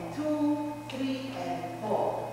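A woman calling out dance-step counts in two long, drawn-out, sung-like syllables, one after the other.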